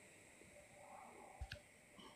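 Near silence: faint room tone on a video call, with one brief faint click about one and a half seconds in.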